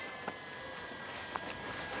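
Quiet outdoor background with a faint steady hiss and two faint ticks, one just after the start and one about halfway through. No motors are running.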